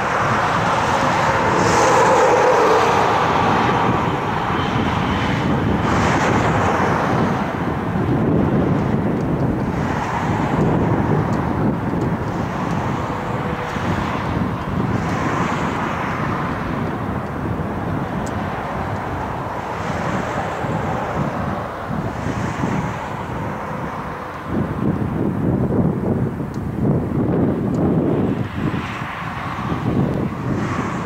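Jet engine noise from a Boeing 777-300ER's twin GE90 turbofans as the airliner lands just past the microphone. It is loudest in the first few seconds, with a brief engine whine, then runs steadily as the jet rolls out down the runway. Wind buffets the microphone in the last few seconds.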